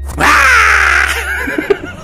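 A jumpscare scream sound effect: a sudden, loud, harsh shriek that falls in pitch over about a second and then fades. Under it, a low steady hum cuts off about a second and a half in.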